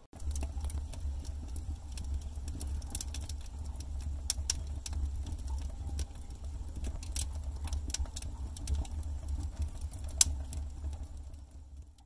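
Wood fire burning in an earthen oven: irregular sharp crackles and pops from the burning logs over a steady low rumble, fading out near the end.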